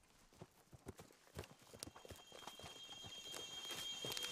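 Irregular footfalls knocking on the ground, faint at first and growing louder. Steady high-pitched ringing tones fade in over the second half.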